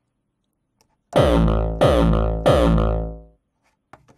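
Distorted hardcore kick drum synthesized in Sonic Charge Microtonic and played through a multiband compressor, hit three times about 0.7 s apart. Each hit has a sharp attack and a heavy pitched tail that drops slightly in pitch, and the last one rings out longer.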